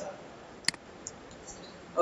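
A single sharp computer mouse click, about two thirds of a second in, over quiet room tone.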